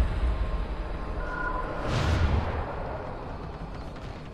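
Horror film sound design: a deep low rumble that slowly fades, with a swelling whoosh about two seconds in.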